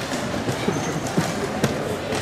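Wooden chess pieces set down hard and chess clock buttons slapped in quick succession during a blitz game: about three sharp knocks over a steady background hum.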